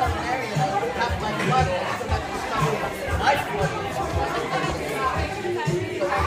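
Many people chattering at once over background music with a steady beat of about two thumps a second.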